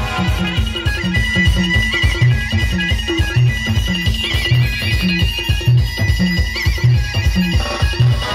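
Loud dance music blasting from a DJ sound system, with a heavy bass beat about twice a second and a high, trilling lead melody that comes in about a second in.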